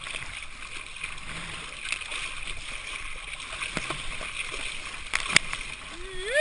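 Choppy water rushing and splashing against a surfboard and its board-mounted camera as the board is paddled prone through the waves, with a few sharper splashes, the loudest near the end.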